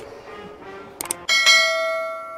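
Subscribe-button animation sound effect: a mouse click at the start and a quick double click about a second in, then a bell chime that strikes twice in quick succession and rings on, slowly fading.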